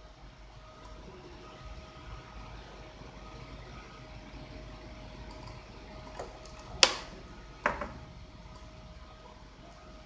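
Two sharp computer-mouse clicks, about a second apart, over a faint steady electrical hum.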